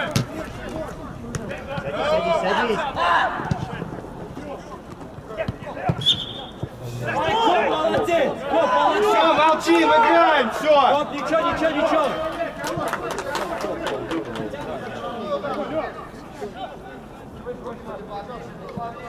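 Footballers' voices calling and shouting during play, loudest in a stretch of talk near the middle, with a few sharp knocks from the ball being kicked.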